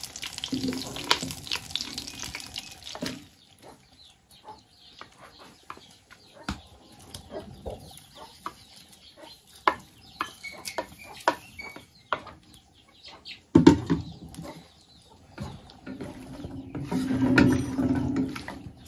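Raw shrimp tipped into hot butter in a clay cazuela, frying with a sizzle, with scattered knocks and scrapes of a wooden spatula against the clay. There is a loud knock near the end of the middle, and the stirring sound grows denser over the last couple of seconds.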